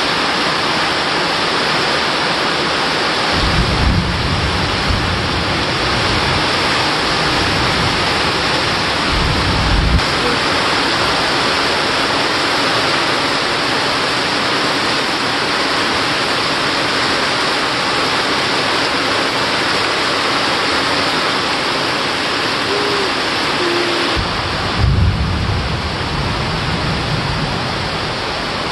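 Heavy rain falling steadily, a dense hiss of rain on trees and ground. Deep rumbling comes in twice, from about three to ten seconds in and again near the end: distant thunder.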